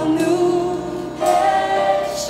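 Gospel choir singing held notes in harmony, moving to a new chord a little over a second in.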